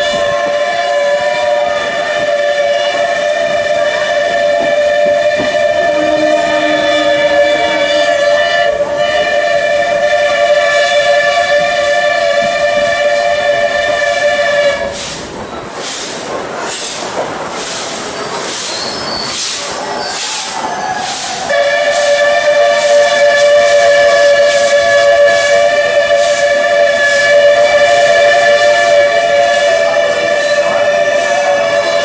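A train's whistle sounding a steady two-note chord for about fifteen seconds, then stopping. For about six seconds only the rattle and clatter of the moving train is heard, then the whistle sounds again for the last eight seconds.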